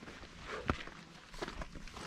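Footsteps on loose, stony limestone ground: a few separate steps, the sharpest about a second in.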